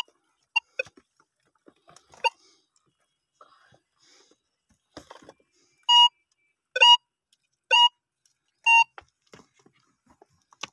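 Metal detector signalling a buried metal target as its search coil passes over the dug spot: a few short chirps, then four louder, clear beeps about a second apart near the end.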